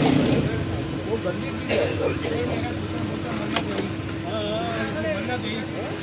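Busy street noise: indistinct voices over traffic, with a steady hum and a couple of sharp clicks.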